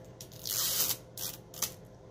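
Packaging being handled: a hiss of about half a second, then two shorter scraping rustles, as a product box is moved and turned over in the hands.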